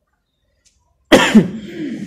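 A single loud cough close to the microphone, breaking in suddenly about a second in after a near-silent pause and trailing off into voice.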